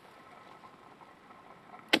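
A single sharp chop just before the end: the Work Tuff Gear Campo's SK85 steel blade striking through a green pine branch during delimbing. The rest is faint outdoor background between strokes.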